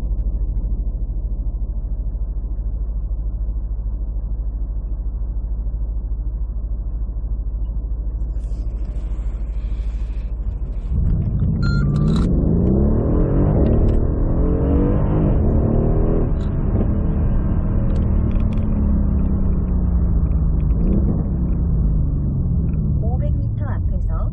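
Mercedes-AMG CLS63 S (W218) twin-turbo 5.5-litre V8, heard from inside the cabin, idling steadily. About 11 seconds in it gets louder and the car pulls away; the engine note rises and falls as it moves up through first and second gear at low speed.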